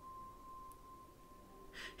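Near silence with a faint, steady single tone held for about a second and a half. It stops just before a short intake of breath near the end.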